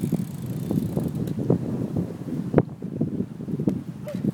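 A child's Redline Pitboss BMX bike rolling over rough concrete: a steady low rumble of the tyres, with scattered irregular ticks and knocks, the sharpest one a little past halfway. Wind buffets the microphone.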